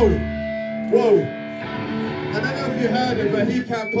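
Electric guitars left ringing through the amplifiers between song parts, with held notes and a deep bass note that cuts off about half a second in, and voices calling over it. A man starts talking into the microphone near the end.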